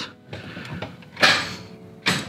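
A few faint clicks and a short burst of noise as the ignition of a Subaru BRZ is turned, with no engine starting: a failed start attempt.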